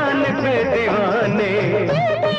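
Bollywood film song music with a wavering melody line over steady bass notes.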